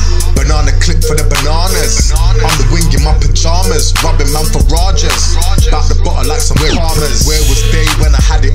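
UK rap track playing: rapped vocals over a hip hop beat with heavy deep bass and regular drum hits.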